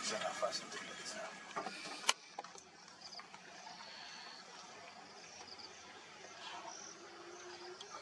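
Quiet outdoor background: faint low voices in the first two seconds, a single sharp click about two seconds in, then faint short high chirps.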